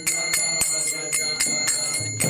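Karatals (small brass hand cymbals) struck together in a steady rhythm, about four strikes a second, their bright ringing carrying on between strikes.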